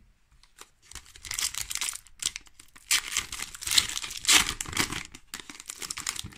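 Foil wrapper of a Pokémon trading-card booster pack being torn open and crinkled by hand. It sets in about a second in as a rapid crackly rustle and is loudest in the middle, as the foil is pulled apart.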